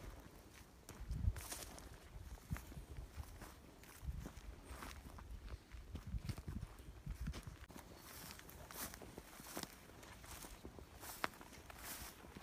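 Faint, irregular footsteps on a gravelly track and through dry grass, with scattered low thumps and crackles.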